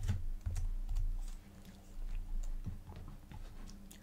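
Computer keyboard keys being pressed in an irregular run of soft clicks and taps while a line of code is entered.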